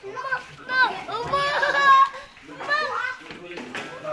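Children's voices chattering and calling out in high pitch, loudest about two seconds in.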